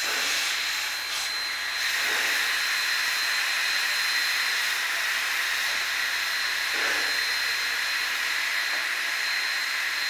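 Steady steam hiss from Sierra Railway No. 3, a 4-6-0 steam locomotive standing with steam up.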